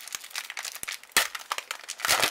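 Foil trading-card booster pack being torn open and crinkled in gloved hands: a rapid run of crackles, with one sharp, louder tear about a second in.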